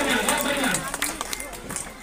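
Speech: a voice talking, dying down after about a second, with a few faint clicks.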